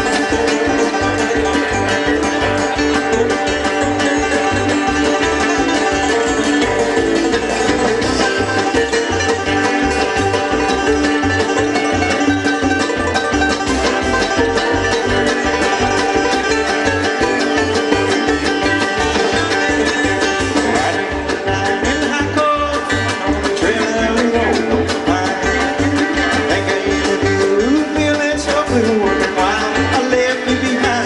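Live bluegrass band playing an instrumental passage: banjo rolls over fiddle, mandolin and acoustic guitar, with upright bass pulsing steadily underneath and drums.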